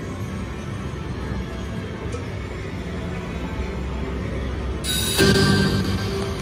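Video slot machine playing its win music on the end-of-bonus credit screen. Near the end, a louder, brighter burst of machine sound starts.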